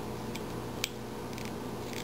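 Small carving knife cutting into a hand-held wood carving that has been sprayed damp: a few faint snicks and clicks of the blade in the wood, the sharpest a little under a second in.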